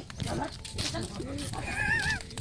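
A high, wavering animal call about a second and a half in, over indistinct voices.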